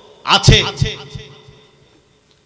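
A man's short, loud utterance into a close microphone, with two deep thumps of breath popping on the mic, trailing off in an echo and then cutting to dead silence near the end.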